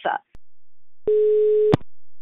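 A single steady telephone tone on the line, starting about a second in and lasting under a second, cut off by a sharp click, as a call on a tapped phone line connects.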